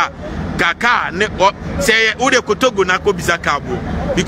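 A man talking, over a steady low background rumble.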